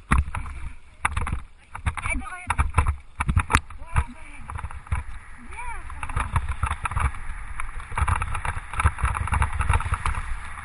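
Wheels rattling and rumbling over a rough, wet gravel track as a dog pulls the rig downhill, with sharp jolts over bumps and wind buffeting the microphone. A voice calls out a few times in the first half.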